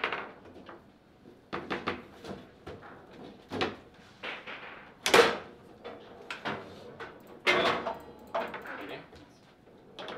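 Table football play: the hard ball and the plastic men on the steel rods clacking and knocking in a quick, irregular series of sharp strikes, the loudest about five seconds in.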